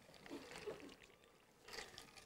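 Faint sips and swallows of a man drinking from a metal water bottle.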